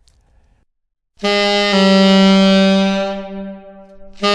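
Tenor saxophone playing an approach note: a short tongued B-flat slurred down a semitone into a held A. The held note swells and then fades away near the end.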